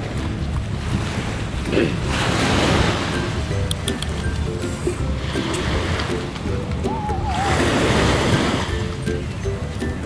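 Small waves breaking and washing up a sandy beach, swelling twice, about two seconds in and again near eight seconds, over background music.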